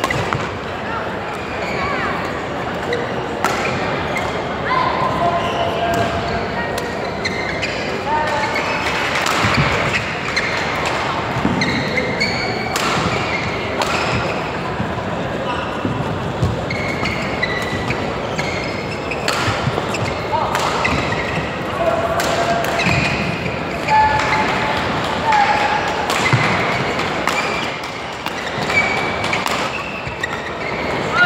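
Badminton rallies: rackets striking the shuttlecock in sharp, irregular cracks and court shoes squeaking on the floor, over the chatter of a busy sports hall.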